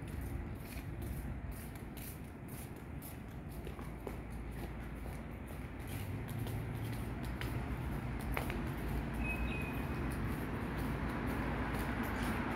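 City street ambience: a steady low hum of distant traffic, with the walker's footsteps on the paving. A short high chirp or beep sounds about nine seconds in.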